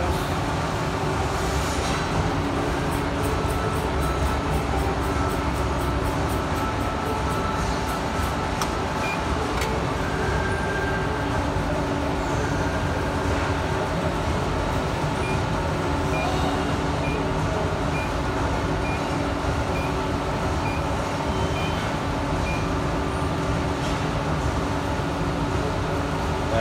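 Steady hum of running machinery with several low tones. A quick run of light ticks, about four or five a second, comes a few seconds in, and faint short beeps repeat a little more than once a second for several seconds in the second half.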